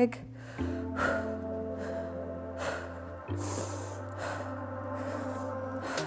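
Background music: held chords over a steady bass note that shifts to a new pitch about half a second in and again a little past three seconds.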